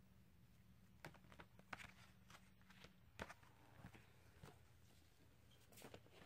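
Near silence with faint handling noises: scattered soft clicks, taps and rustles as small items are picked up and moved, over a low hum that stops about halfway.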